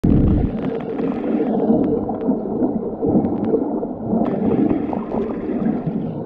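Muffled churning of pool water heard through a submerged camera as finned swimmers kick and grapple, with scattered sharp clicks.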